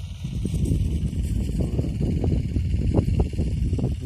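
Wind buffeting the microphone, a low, gusty noise that rises and falls unevenly throughout.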